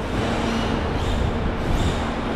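Yokomo YD2 SXIII electric RC drift car running on a polished concrete floor: a steady hiss of its hard tyres and drivetrain, with a faint whine from its motor that comes and goes.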